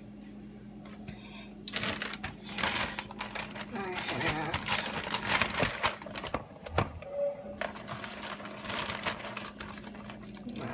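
Plastic bag of spinach leaves crinkling and rustling as it is handled and opened, a dense run of crackles for several seconds that then dies down, over a steady low hum.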